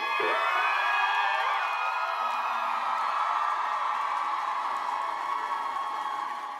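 Studio audience cheering and screaming, a dense mass of high-pitched whoops, just after the song's music cuts off at the start.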